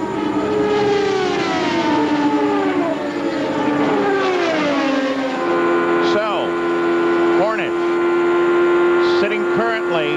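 Indy car engines running at race speed. First several cars pass one after another, each note falling in pitch as it goes by. Then comes the steady, even note of a Chevrolet V8 heard onboard the car, with brief swoops in pitch a few times.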